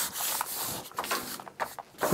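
Paper application tape being handled over cut vinyl lettering, with hands rubbing the tape and roll across the sheet: a dry rubbing rustle with a few light clicks, louder in the first second and fading after.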